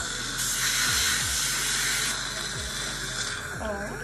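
Hose-fed dental instrument hissing steadily in a patient's mouth during a teeth cleaning. The hiss is loudest in the first couple of seconds and dies away shortly before the end. Background music plays underneath.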